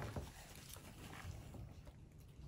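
Mostly quiet room noise with a few faint, short ticks as a small carving knife cuts petals into a raw turnip.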